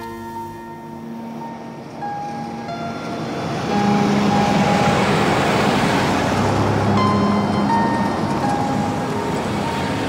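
A taxi car driving past, its engine and tyre noise swelling about three and a half seconds in and easing off toward the end, over background music with held notes.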